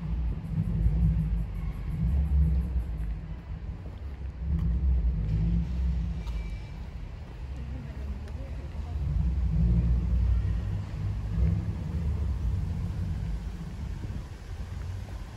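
Wind buffeting the microphone during an outdoor walk: a low, gusting rumble that swells and fades every second or two.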